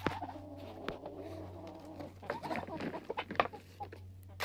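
Silkie chickens clucking while they feed: a low drawn-out murmuring call for about the first two seconds, then a run of short clucks. A faint steady hum lies underneath.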